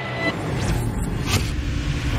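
Cinematic logo-intro sound effect: a deep rumbling swell building in loudness, with two quick swishes sweeping past about two-thirds of a second and a second and a third in.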